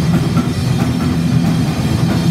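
A live thrash metal band playing loud: distorted electric guitar and bass guitar over a drum kit, continuous and heavy in the low end.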